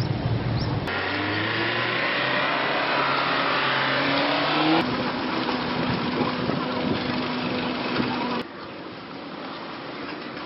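A motor vehicle's engine rising in pitch as it revs up for a few seconds, then a steady engine hum, over busy street noise. The sound cuts abruptly several times, and the last second and a half is quieter.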